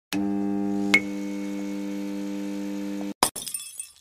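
Intro sound effect of a neon sign: a steady electric buzz switches on with a click, with a sharp zap just before a second in. About three seconds in the buzz cuts off and glass shatters, tinkling away.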